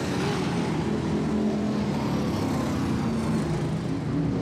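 Vintage sprint car engines running laps of a dirt track, a steady engine drone whose pitch wavers slightly.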